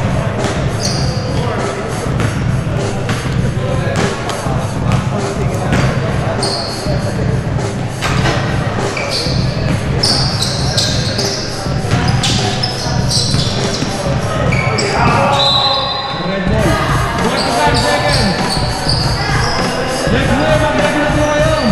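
Basketball bouncing on a hardwood gym floor during live play, with sharp bounces every second or so, over background music with a steady low beat.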